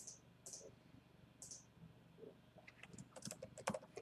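Computer keyboard typing: a quick, faint run of key clicks in the second half, after near silence.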